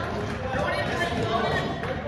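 Indistinct, overlapping voices of players, coaches and spectators calling out in a gymnasium during a youth basketball game, echoing in the hall, with an occasional thud of a ball or sneakers on the court.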